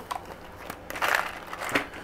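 Handling noise from a gloved hand: a light click near the start, then a short crackling rustle about halfway through.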